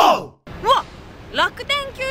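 A woman's voice: a loud vocal sound falling in pitch, a brief cut to silence, then two short rising vocal sounds and the start of speech over steady outdoor background noise.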